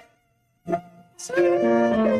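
A congregation singing a hymn with instrumental accompaniment. A brief hush comes first, then a short chord, then a long held sung note from about a second and a half in.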